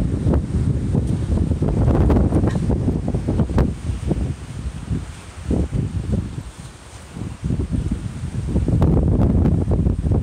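Strong wind buffeting the microphone in irregular gusts, easing briefly about two-thirds of the way through.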